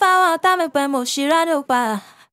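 Solo sung female vocal played back dry, with no beat or effects under it: a melodic line of held notes that slide in pitch, in short phrases.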